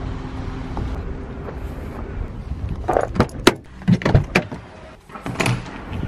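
A steady low rumble for the first couple of seconds, then a quick run of sharp clicks and knocks about three seconds in: keys jangling and a door being handled.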